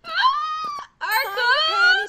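A high-pitched cartoon voice giving two long exclamations, each rising in pitch, the second longer and ending louder.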